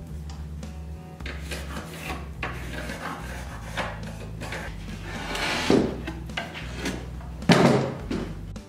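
Wooden cabinet parts being handled and shifted on a workbench: irregular rubbing and knocks of wood on wood, the loudest near the end, over quiet background music.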